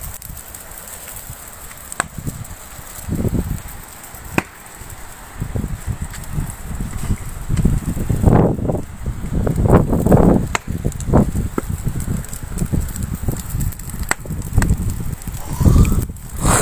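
Open fire burning in an earth pit, heard under heavy gusts of wind rumbling on the microphone, with a few sharp cracks from the fire.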